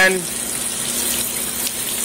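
Water spraying from a home-made tube cleaner, a length of 3/8-inch ACR copper tubing with holes near its brush end fed from a water line, as it is worked inside the tubes of a chiller absorber: a steady hiss of spray, with a faint steady hum underneath.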